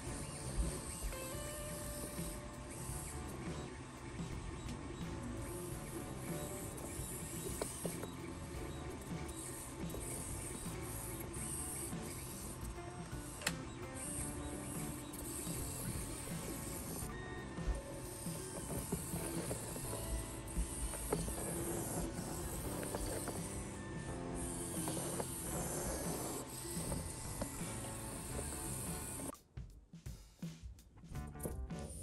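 Whirring of a micro RC car's tiny N10 motor and gear train as it drives and manoeuvres, mixed with background music. The sound drops away abruptly near the end.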